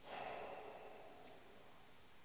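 A person sighing: one breathy exhale lasting about a second, fading into faint room tone.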